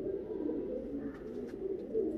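Domestic pigeons cooing, several low coos overlapping into a steady murmur.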